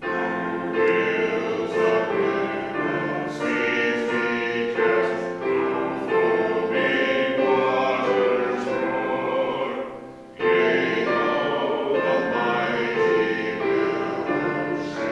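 Group of voices singing a hymn together, phrase by phrase, with a short break between lines about ten seconds in.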